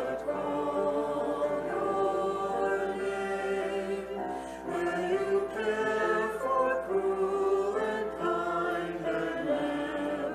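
A church choir and congregation singing a hymn together, in slow phrases of held notes.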